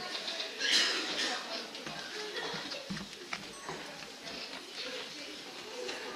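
Indistinct chatter of small children and adults in a hall, with a louder burst of voices a little under a second in.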